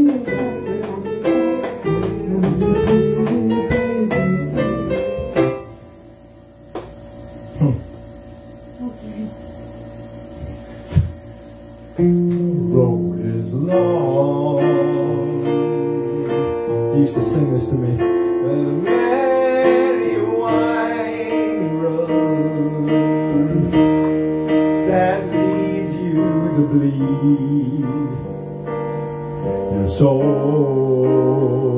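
Electronic keyboard playing: a plucked, guitar-like passage that drops away after about five seconds to a quiet stretch with a few clicks, then comes back about twelve seconds in as held chords with a melody over them.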